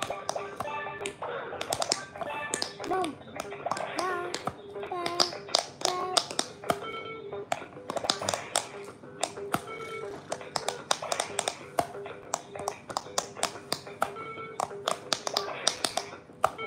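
Fingers rapidly tapping the silicone bubble buttons of a light-up quick-push pop-it game, a quick run of sharp taps mixed with the game's short electronic beeps and jingles.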